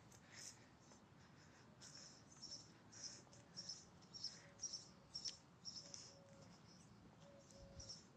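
Near silence, with a small bird's faint high chirps repeating about twice a second from about two seconds in.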